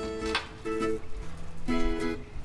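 Background music: an acoustic guitar strumming a few separate chords, each ringing briefly before the next.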